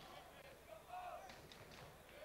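Near silence: faint ambience of a football match on an old TV broadcast, with a faint voice about a second in.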